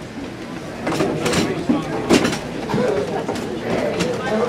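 Banquet chairs being pushed in to the tables, with a few short scrapes and knocks about a second in and again around two seconds in, over the murmur of a crowd talking.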